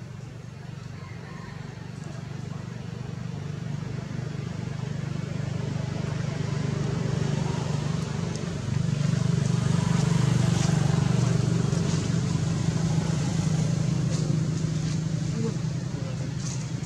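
A motor engine running steadily, a low hum that grows louder over the first ten seconds or so, with a step up a little past the middle, and then holds.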